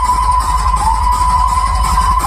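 Dance music played loud through a large outdoor DJ sound system, with heavy deep bass under a single high note held steady.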